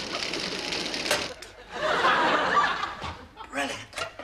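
Studio audience laughing, a dense swell of laughter that builds a little under two seconds in.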